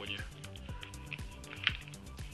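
Background music with a steady beat, and about three-quarters of the way through a single sharp plastic click as the cordless phone handset's case halves snap onto their latches.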